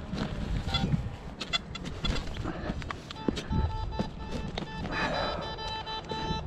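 Metal detector target tones, a steady electronic beep held for a couple of seconds in the second half, while a hand digger chops and scrapes into dry dirt.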